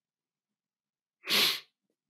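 A single short, sharp sneeze about a second in.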